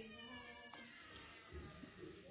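A faint, drawn-out pitched cry in the background, slowly falling in pitch and fading out about a second in, over quiet room tone.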